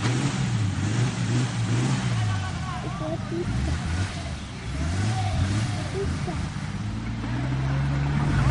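An off-road 4x4's engine running and revving up and down as the vehicle works through deep mud.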